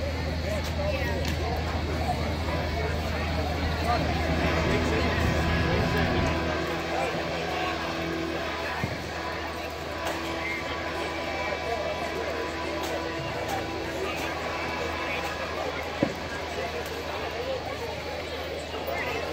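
Live band music played through the PA of an outdoor festival stage, heard from out in the audience, with voices mixed in. A low rumble underlies the first six seconds or so and then stops, and a single sharp knock comes about sixteen seconds in.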